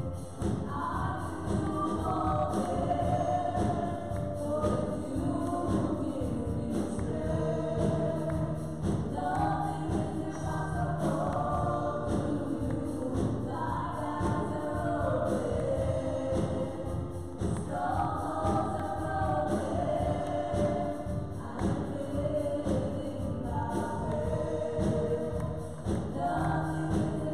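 Live gospel worship song: three women singing into microphones over a band with drums and keyboard.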